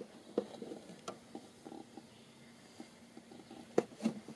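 Faint scattered clicks and soft rustles of handling, with one sharper click near the end.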